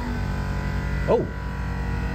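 A steady hum made of several level tones, with a man's short 'oh' about a second in.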